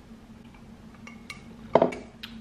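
A drinking glass set down on a hard windowsill: a single sharp clink near the end, after a few faint small clicks from handling the glass.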